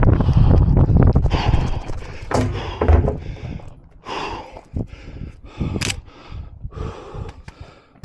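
Wind rumbling on a head-mounted camera's microphone, then a run of short rustling, scuffing noises about two a second as a 3-gun competitor moves and changes from shotgun to pistol.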